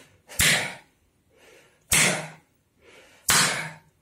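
A gloved hand slapping a man's bare chest hard in a percussive chest massage: three sharp slaps about a second and a half apart, each with a short rush of breath as he exhales on the strike, and faint breaths between.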